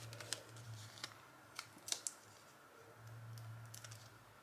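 Faint crackles and sharp ticks of a small vinyl decal and its paper backing being handled and pressed onto clear contact paper, over a low hum.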